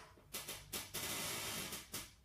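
Bursts of crackle and hiss from an audio cable jack being handled in a phone's socket: two short crackles, then about a second of loud, even static, then a last sharp crackle.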